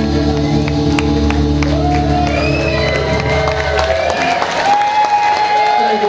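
A live rock band's final chord on electric guitars, bass and drums rings out and cuts off about four seconds in. The audience then cheers and claps, with whistles rising and falling over the noise.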